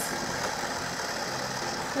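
A toy blender's small electric motor running steadily, with a low, even hum.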